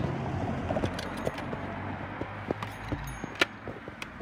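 A road vehicle's engine running steadily, which fades out about three seconds in, with scattered clicks from footsteps on the crossing surface.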